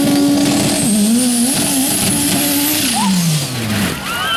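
Racing buggy's engine revving hard under full throttle on a dirt track, its pitch wavering up and down, then sliding steadily down over the last second as the buggy tips over and rolls. A faint high whine rises and then falls away above the engine.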